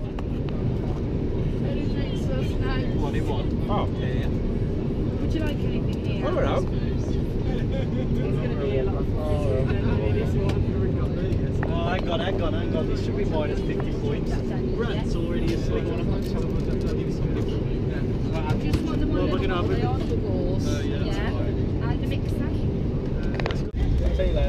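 Steady low rumble of an airliner cabin, engine and airflow noise, with people's voices chatting over it.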